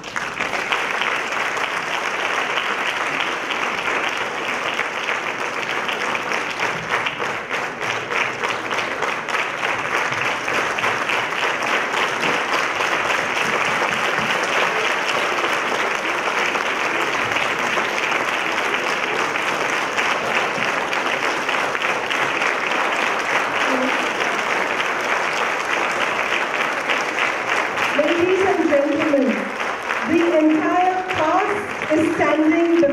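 A large audience applauding steadily as the cast takes its curtain call, the clapping starting suddenly right at the beginning.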